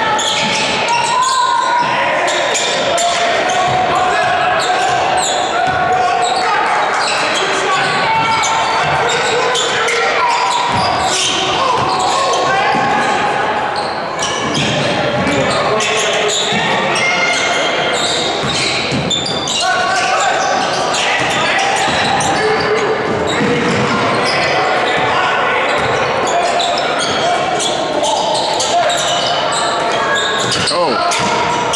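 Live basketball game in a gym: players, coaches and spectators shouting over one another, with a ball dribbling on the hardwood court, all echoing in the large hall.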